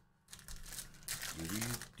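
A foil 2023 Bowman's Best baseball card pack wrapper crinkling and tearing as it is peeled open by hand. The crackle starts about a third of a second in and is loudest in the second half.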